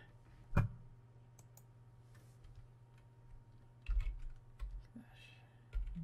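Computer keyboard keystrokes, a few scattered taps rather than steady typing: a sharp one about half a second in and a quick cluster around four seconds in, over a faint steady low hum.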